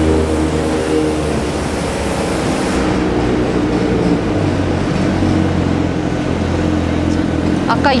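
City street traffic: a vehicle engine running with a steady low hum over general street noise.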